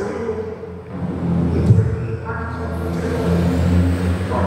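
A man singing slowly through a microphone and PA, holding long steady notes, over a steady low hum.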